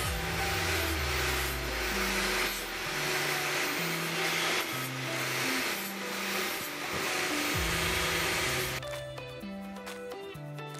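Angle grinder with an abrasive disc grinding the end of a square metal tube: a rasping hiss that swells and eases in strokes, stopping abruptly about nine seconds in. Background music with a steady bass line plays throughout.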